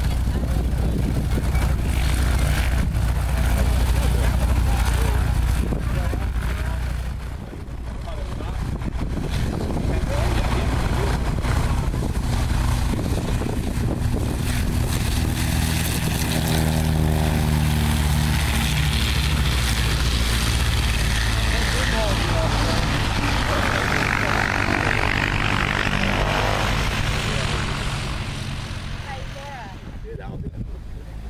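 Single-engine light propeller airplanes taxiing with their piston engines running steadily; about halfway through, a 1997 Maule taxis past and its engine note shifts in pitch as it goes by.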